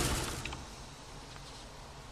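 Nissan Maxima's heater/AC blower fan running at full power, a steady rush of air through the dash vents. About half a second in, the sound drops to a much quieter, duller level.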